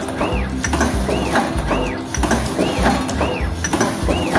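Automatic siu mai making machine running: a motor whine rises and falls in pitch about every three-quarters of a second as the rotary table indexes, with mechanical clicking.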